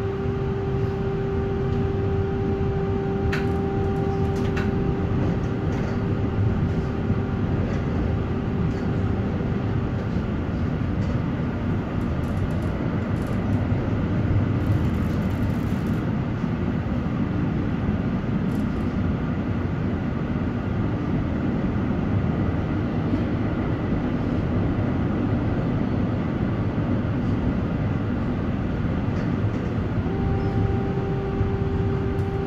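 Valmet-Strömberg MLNRV2 tram heard from inside while running on street track: a steady rumble of wheels on rail. Over it, an electric whine from the thyristor-controlled traction drive holds steady for about the first ten seconds, fades away, and returns faintly near the end. A couple of sharp clicks come early on.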